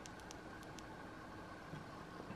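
Quiet room hiss with a few faint ticks in the first second: a small flashlight's switch being clicked several times in quick succession to try its modes.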